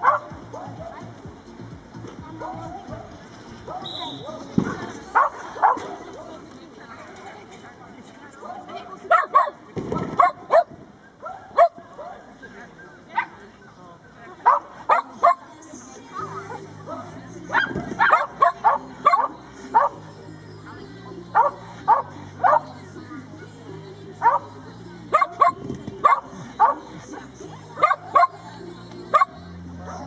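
Dog barking repeatedly in short sharp barks, often two or three in quick succession, while running an agility course.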